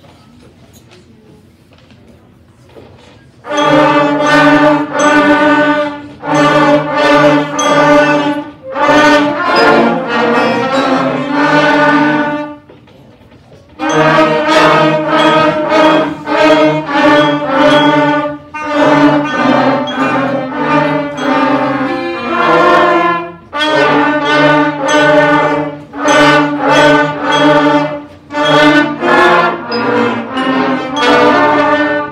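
Beginner school concert band of flutes, clarinets, saxophones, trumpets and trombones starting to play about three and a half seconds in. It plays in short held-note phrases, with a pause of about a second and a half near the middle.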